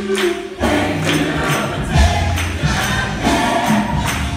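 A large gospel choir singing with a live band, held sung chords over bass notes and a steady beat.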